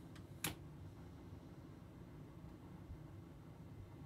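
A single sharp click from the control panel about half a second in, just after a fainter click, over a faint steady low hum.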